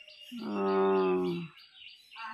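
Small birds chirping steadily among garden trees. About a third of a second in, one loud, steady, voice-like tone is held for about a second and falls slightly in pitch.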